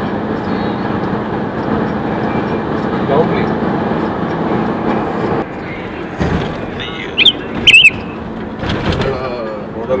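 Road and engine noise inside a moving car, a steady rumble that drops in level about five seconds in. Near the end come two short, loud, high-pitched beeps about half a second apart.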